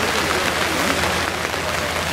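Steady hiss of open-air noise over faint, distant voices from the pitch.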